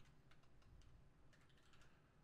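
Faint computer keyboard typing: a scatter of soft, irregular key clicks.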